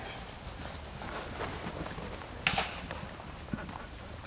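A horse's hoofbeats in trot on sand arena footing, with a short sharp burst of noise about two and a half seconds in.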